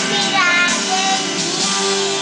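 A young boy singing a song in a sustained melody over a recorded instrumental backing track with guitar.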